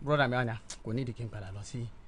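Speech only: a man talking in a studio discussion.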